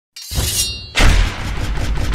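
Logo-intro sound design: a short bright ringing burst, then a heavy crashing hit with deep low end about a second in, carrying on under intro music.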